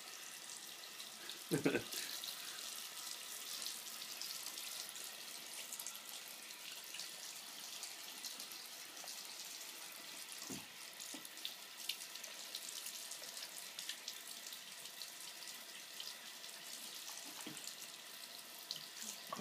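Bathroom sink faucet running in a steady thin stream into a ceramic basin, with a child's hands in the water. One brief louder sound about a second and a half in.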